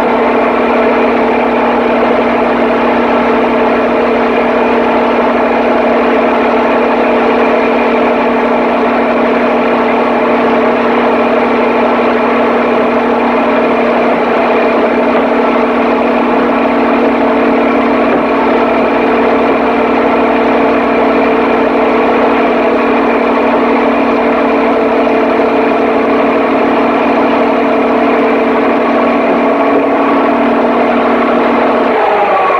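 Papp noble-gas engine running at a steady speed: a constant, loud pitched hum that does not rise or fall.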